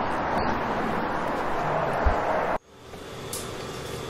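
Steady outdoor street and traffic noise, with a short low thump about two seconds in. About two and a half seconds in it cuts off suddenly, giving way to a much quieter indoor room tone.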